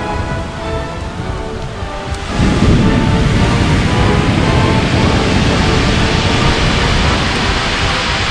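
Pacific surf breaking on a pebble beach: a steady wash that grows louder as a wave surges in about two and a half seconds in, with faint steady tones beneath it.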